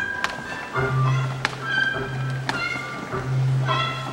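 Live tango orchestra playing a tango, with sharp accented strokes over sustained melodic lines and a held low bass note that comes in about a second in.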